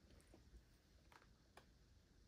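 Near silence: room tone, with three faint taps as a household iron is lifted and set down on a pieced quilt block.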